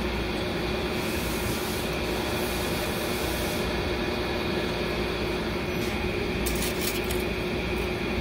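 Steady background hum with a stretch of rubbing hiss and a few light clicks near the end, as a hand works at the reverse sprag inside a Dodge 727 transmission case.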